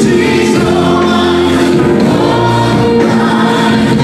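Live worship band playing a gospel song: female voices singing over bass guitar, electric guitar and keyboards.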